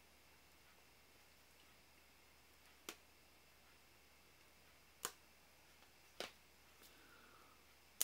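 Near silence broken by three faint, sharp clicks about three, five and six seconds in, from hands handling the shrink-wrapped card decks while working the plastic off.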